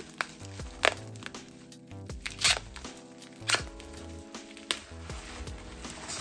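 Bubble-wrap packaging crinkling and crackling as it is cut and pulled open with a knife, with about four sharp crackles standing out. Background music with a bass line plays under it.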